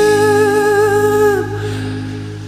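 A male singer holds one long sung note over a ballad backing track. The note wavers slightly, then falls away about one and a half seconds in, and the backing track carries on more softly.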